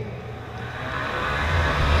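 A passing road vehicle, its noise growing steadily louder with a low rumble near the end.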